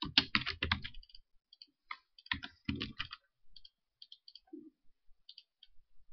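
Computer keyboard keys clicking in two quick bursts, then a few fainter single key taps.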